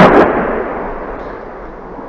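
Artillery shell explosion: a second short crack just after the start, then the blast's rumble dies away.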